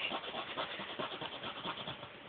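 A zipper being zipped and unzipped rapidly again and again, a fast, continuous run of rasping clicks from the zipper teeth.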